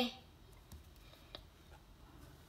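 A ballpoint pen writing a letter on notebook paper, faint, with two light ticks of the pen on the page.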